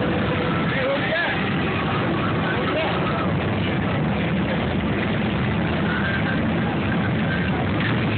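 Engines of a large group of motorcycles running together as the pack rolls slowly along the street, a steady, loud, dense rumble with voices mixed in.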